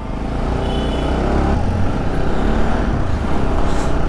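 A road vehicle's engine and road noise, a steady low rumble that grows gradually louder.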